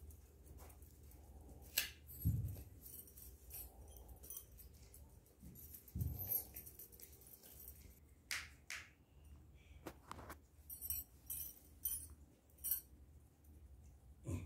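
Crayons scratching and tapping on paper laid on a clipboard, with scattered small clicks and rustles as they are handled, and a couple of soft low thumps about two and six seconds in.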